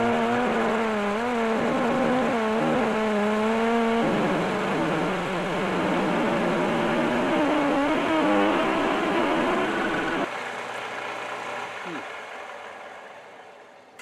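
HSS lathe tool taking a cut on a bar of mystery steel, giving off weird noises: a loud, wavering, pitched squeal for about four seconds, then a rougher, irregular squealing chatter. About ten seconds in the sound drops sharply and fades away. The machinist suspects there must be gas in the steel.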